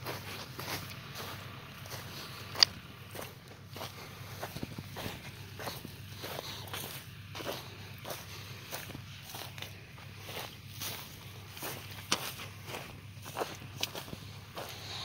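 Footsteps walking at a steady pace over dry soil and dry grass, with one sharp click about two and a half seconds in. A faint steady low hum runs underneath.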